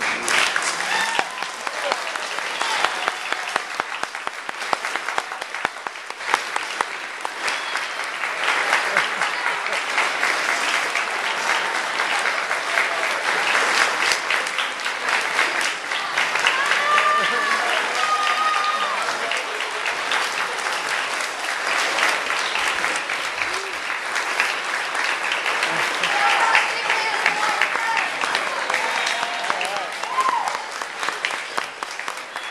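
Audience and band members clapping, starting suddenly and continuing steadily, with a few voices calling out over the applause partway through.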